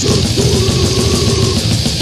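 Brutal death metal recording: heavily distorted low guitars and fast, dense drumming, with a higher note that bends near the start and is held for about a second over them.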